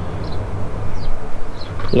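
Steady low background rumble with a few faint, short, high chirps and no clear event.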